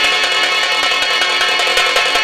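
Live nautanki stage-band music: fast, dense drum strokes over sustained harmonium chords, played loud.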